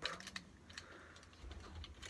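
Faint, irregular clicks and light taps of hard plastic parts on a Transformers Masterpiece MP-30 Ratchet figure as it is handled and its parts are moved into place, with a low rumble near the end.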